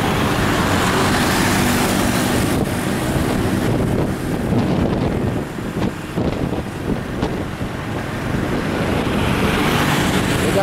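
Road and engine noise from a vehicle moving through city traffic, with wind rushing over the microphone. It is a steady noise that eases a little about halfway through.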